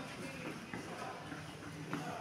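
Faint background murmur of people talking.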